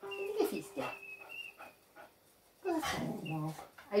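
A dog whimpering, mixed with a woman's voice.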